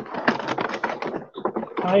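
Toy packaging being handled and opened: a quick run of crackles and clicks from card and plastic.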